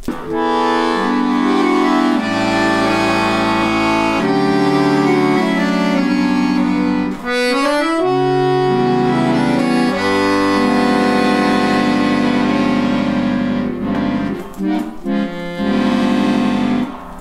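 Barcarole Professional chromatic button accordion playing a short chord piece: sustained treble chords over held bass notes, moving from a G major seventh to a G7♯11♭9, with a quick rising run of notes about halfway through. The bass side's seventh-chord button sounds all four notes, fifth included, so the final altered G chord is not voiced the way the player wants.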